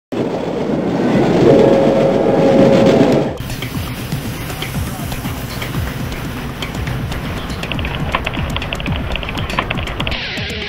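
Music mixed with train sounds. A loud passage with a held tone fills the first three seconds and cuts off abruptly; after it a train rumbles and clatters on the rails, with many short clicks and knocks.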